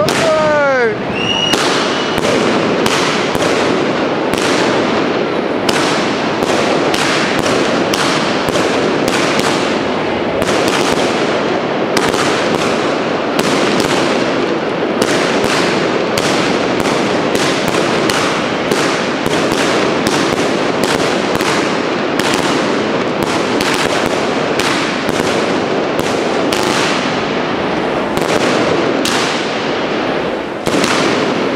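Aerial fireworks display: a fast, continuous barrage of shell bursts and bangs, about two to three a second, with a falling whistle right at the start.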